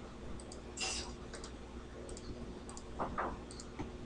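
Quiet computer mouse clicks, several scattered single and paired clicks, over a steady low room hum.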